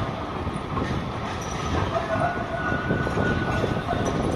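Melbourne B2-class articulated tram running on its street rails as it pulls away, mixed with city street noise; a thin high whistling tone sounds for about two seconds in the middle.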